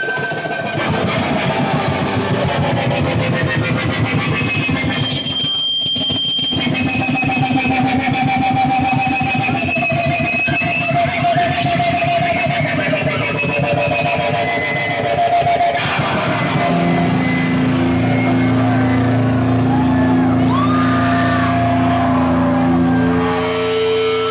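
Live band playing loud, noisy music on electric guitar and bass, with high wavering whines over a dense wash of distortion. About two-thirds of the way in, it settles into long held low droning notes.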